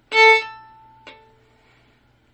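A single staccato note bowed on a violin: a quick, hard-started stroke, cut short, the string ringing on briefly after the bow stops. A second, much fainter short note follows about a second in.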